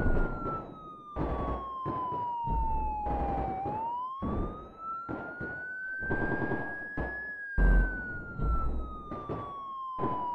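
A wailing siren whose single tone glides slowly down, back up and down again over several seconds, over a beat of repeated hits and deep bass thumps.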